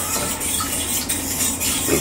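Egg-and-milk batter being stirred in a small metal saucepan, a steady swishing and scraping against the pan.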